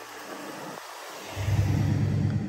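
A pickup truck's engine rumbles low and loud, coming in about a second and a half in over a faint hiss.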